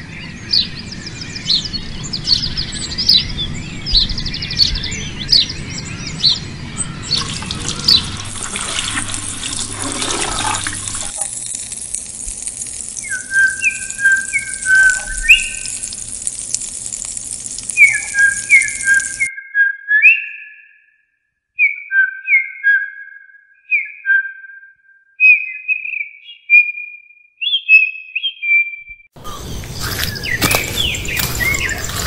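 Birds chirping and calling over a steady outdoor background hiss, then clear short whistled bird notes at a higher and a lower pitch. The background hiss cuts off sharply about two-thirds of the way through, leaving the whistled notes with silent gaps between them.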